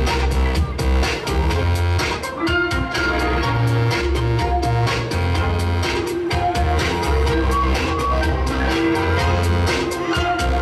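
Recorded dance music with a steady beat and heavy bass, played over stage loudspeakers for a couples dance.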